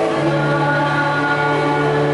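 Church choir singing a hymn, holding long sustained notes.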